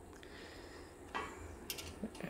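A hand screwdriver tightening a screw into a metal rig frame, with faint scraping and a few small clicks near the end.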